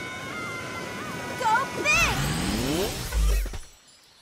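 Cartoon water rushing and splashing as a sea turtle swims with a rider on its back, with a voice calling out over it and a yelp about two seconds in. A heavy low thump comes a little after three seconds, then the sound falls away.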